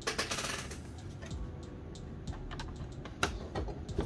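Plastic bottom cover of a laptop being handled and set back onto the chassis: scattered light clicks and taps of plastic on plastic, with a sharper click about three seconds in.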